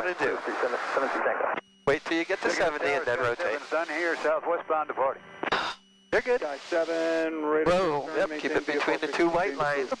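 Voices talking continuously over aircraft headset audio, with two brief breaks in the talk and a faint steady hum beneath.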